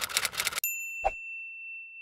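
Typewriter sound effect: a rapid run of key clacks for about half a second, then the carriage bell dings once and rings on for about two seconds. A short knock comes about a second in.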